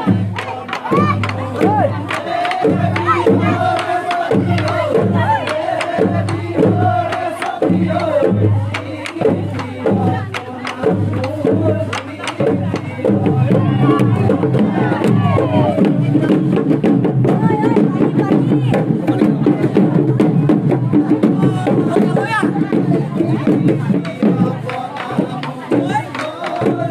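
Bihu dance music: drums beating a fast rhythm under singing and calling voices, with crowd noise. It grows fuller and louder about halfway through.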